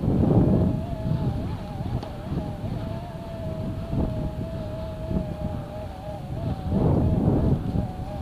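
Small vehicle's motor running at a steady low speed, heard as a steady, slightly wavering whine, under low rumbles of wind and bumps on the microphone that swell at the start and again near the end.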